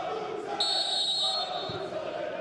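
Referee's whistle blown once for kick-off, a single steady blast of about a second, over background voices in the stadium.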